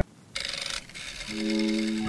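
Background music breaks off, then a short scraping rasp lasting about half a second. A new guitar backing track starts about a second and a half in.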